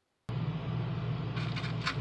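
Near silence, then a sudden jump about a quarter second in to a steady low hum with a background hiss. A few faint clicks come near the end.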